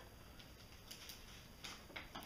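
Near silence broken by a few faint, light clicks and ticks from a fishing plug and its hooks being handled.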